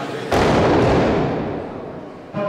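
A 140 kg barbell with rubber bumper plates dropped from overhead onto the lifting platform: a loud sudden crash about a third of a second in, dying away over about a second and a half.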